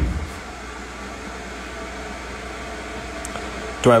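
Steady background hiss with a low hum, like a fan or air conditioning running, with no other distinct event.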